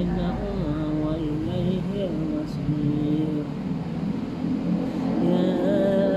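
A man reciting the Quran aloud in a melodic chant: long held notes that slide up and down between pitches, in phrases with short breaths between them, with a higher held note near the end.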